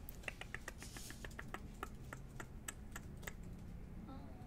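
Strands of a sapphire bead necklace clicking against each other as they are handled: a string of light, irregular clicks.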